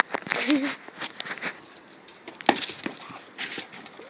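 Scattered scuffs, clicks and crinkling from dogs playing with a rubber ball on stone paving, with one sharp knock about two and a half seconds in. A short hummed voice sounds about half a second in.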